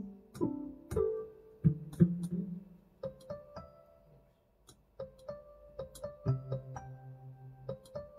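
Digital piano played slowly by a beginner reading from sheet music: single notes and small chords, a pause about four seconds in, then fuller held chords over a low bass note from about six seconds.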